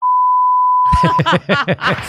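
Steady single-pitch electronic beep, a broadcast 'lost signal' test tone, starting abruptly and lasting just over a second. A voice comes in over its end about a second in.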